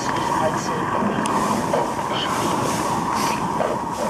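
Electronic soundscape played over the performance's speaker: a steady rumbling drone with a held mid-pitched tone.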